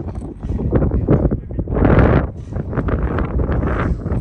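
Strong wind buffeting the phone's microphone: a loud rushing rumble that comes in gusts, loudest about halfway through.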